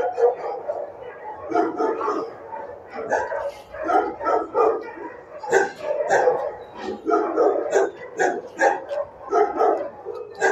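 Dogs in a shelter kennel barking in rapid, irregular, overlapping bursts.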